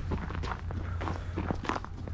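Footsteps walking on snow, a series of steps at walking pace.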